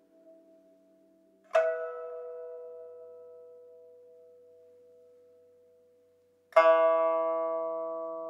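Sparse plucked-string music. A chord is plucked about one and a half seconds in and left to ring, fading slowly, and a second, louder chord is struck about a second and a half before the end.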